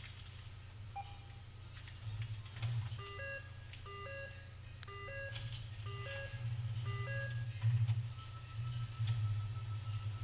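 An electronic two-note chime, a lower note then a higher one, repeated five times about three-quarters of a second apart, over a steady low hum; a thin steady high tone follows near the end.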